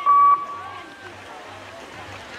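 A short electronic beep, one steady tone held for about a third of a second right at the start, the last of several in quick succession. Faint background voices follow.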